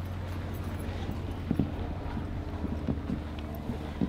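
Footsteps on a paved path, a few faint irregular knocks over a steady low rumble.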